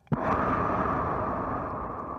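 Darth Vader-style respirator breathing: one long, breathy hiss through a mask that starts sharply and slowly fades.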